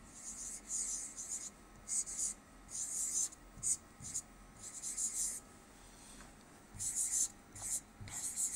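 Pen writing on a board: a run of short, scratchy strokes, each lasting a second or less, with a pause of about a second after the middle.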